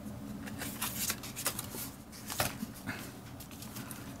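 Paper and cardstock being handled on a wooden tabletop: a few short, irregular rustles and light taps as sheets are moved and slid, over a faint steady hum.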